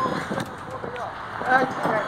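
Cellphone-recorded outdoor sound from a burning bus yard: a steady rushing noise, with a man's voice faintly talking near the end.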